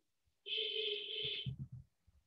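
A steady, high electronic tone with a lower tone under it, lasting about a second, followed by a few faint low thumps.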